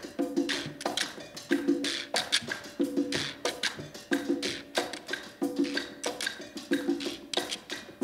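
Latin percussion groove: congas and timbales keep up a steady pattern of pitched drum strokes with claves, joined by a quijada (donkey-jawbone rattle) played with a stick, its loose teeth rattling in time.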